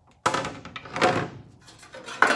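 Two sudden knocks as an air box base piece is lifted off the engine and set down on the car's front body: one about a quarter second in, a second about a second in, each dying away quickly.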